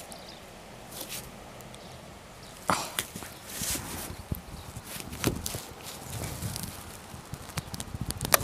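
Scattered small metallic clicks, knocks and scrapes of locking pliers gripping and twisting a seized, rounded-out screw in an aluminium tailgate hinge, which is refusing to turn.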